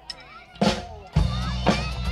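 A live band with a drum kit and electric guitars starts a song: a single drum hit about half a second in, then the full band comes in loudly just over a second in, with heavy bass notes and regular kick and snare hits.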